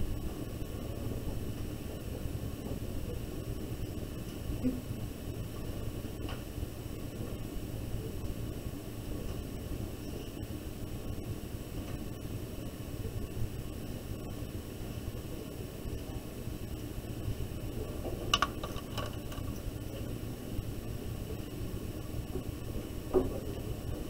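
Steady low room hum. A few faint light clicks come about two-thirds of the way in and again just before the end.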